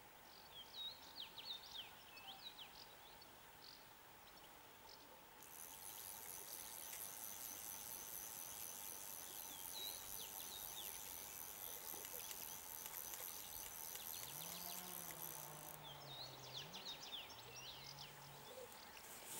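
Faint outdoor ambience: small birds chirping in short bursts at the start and again near the end, and a steady, very high-pitched insect buzz that sets in about five seconds in and stops suddenly about ten seconds later.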